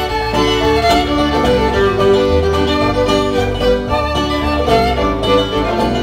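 Bluegrass string band playing an instrumental break: fiddle carrying the melody over picked banjo, mandolin and strummed acoustic guitar, with a steady low bass line.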